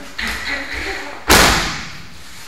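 An aikido partner's body striking the tatami mat as he takes a breakfall from a throw: one loud impact about a second and a half in, ringing briefly in the hall.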